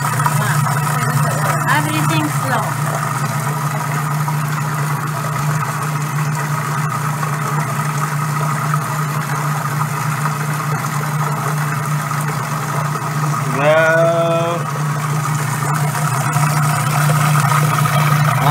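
Electric food processor motor running steadily with an even hum, its blade whipping garlic into toum while oil is drizzled in slowly through the feed tube. A short voice sounds about fourteen seconds in.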